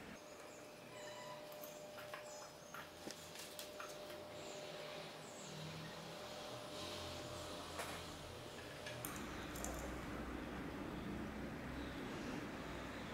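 Faint small clicks and handling noises from soldering wires onto a circuit board, with a faint low hum coming in about nine seconds in.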